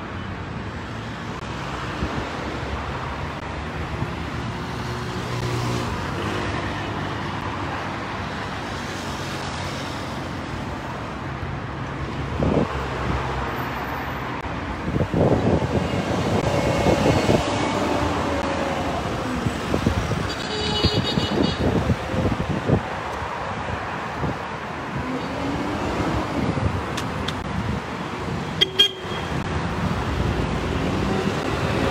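Street traffic: cars passing with a steady haze of road noise, and car horns tooting in the middle of the stretch. There is a sharp click near the end.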